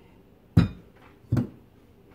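Two knocks, about a second apart: the Oster blender's glass jar set down on a tiled kitchen counter with a clink and a thud.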